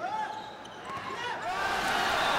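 Shoes squeaking on an indoor volleyball court during a rally, in short high chirps near the start and again a little past the middle. Crowd noise swells over the last half-second.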